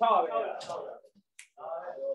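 A person's voice making wordless vocal sounds, broken by a sharp click a little over halfway through.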